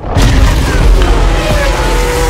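Formula One race cars launching at the race start: a sudden loud, deep hit, then engines revving at high pitch, over music.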